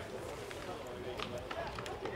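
Faint, distant voices of players and people on the sidelines of a football field, with a few sharp clicks or claps.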